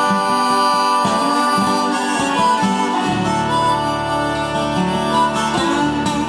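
Instrumental break of an Irish traditional song: concertina and rack-held harmonica playing the melody together in sustained reedy notes over acoustic guitar accompaniment, the bass moving to a new chord about halfway through.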